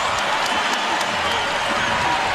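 Arena crowd noise: a large basketball crowd cheering and applauding as a steady wash of sound.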